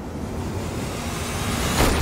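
A trailer sound-effect riser: a noisy whoosh that swells steadily louder and rises in pitch over about two seconds, peaking and cutting off near the end, over a low rumble.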